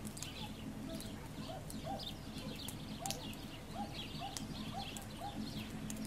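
Small songbirds, sparrows and great tits, chirping in quick short calls throughout, over a steady low hum. Through the middle a lower, rising note repeats about twice a second.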